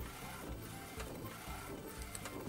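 McLaud MP1812 DTF printer running mid-job, its print-head carriage shuttling back and forth across the film. A steady mechanical whir with a soft knock roughly every half second.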